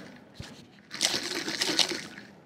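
Ice cubes and water rattling and sloshing inside an insulated water bottle as it is shaken, louder in the second half. The ice is still unmelted after two and a half hours in the bottle.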